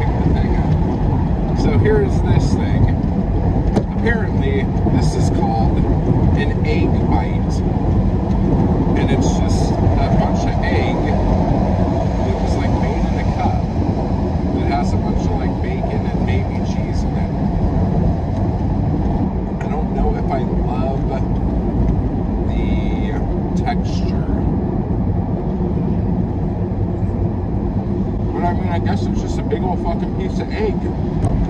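Steady low road and engine rumble inside a moving car's cabin, with scattered small clicks and mouth sounds over it.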